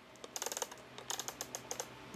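Rotating alarm-setting face of a Sony ICF-A15W analog clock radio being twisted by hand, giving a quick, irregular run of small clicks.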